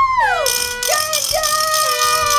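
Handheld wooden noisemaker rattling fast from about half a second in, under a held pitched cheering cry that slides down in pitch just before the rattle starts.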